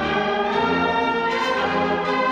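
Slow ceremonial music with brass and voices, sustained full chords changing slowly.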